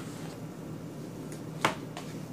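Hands kneading and pressing mashed-potato dough in a baking pan, with soft faint handling noises and one sharp click about one and a half seconds in.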